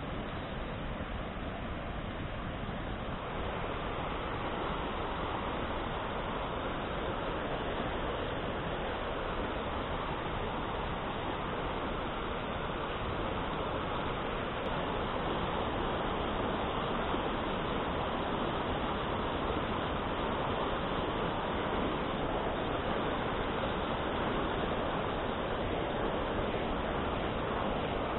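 Rushing mountain stream flowing over rocks, a steady rushing that grows a little louder after the first few seconds.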